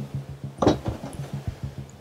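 A single short knock from the padded rear seat back of a camper van's seat-bed as it is folded down, about a third of the way in, over a steady low hum.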